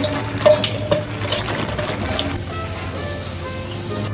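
Kitchen tap running into a stainless steel bowl as dried sorrel is rinsed by hand, with a steady splashing hiss and a few clicks near the start. Background music plays underneath.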